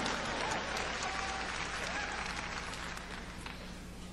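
Congregation applauding, slowly fading away, over a low steady hum.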